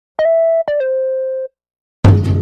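Two electronic beep tones, each opening with a click. The first is short and steady; the second is held longer and steps down in pitch partway through, like a brief synthesized intro sting.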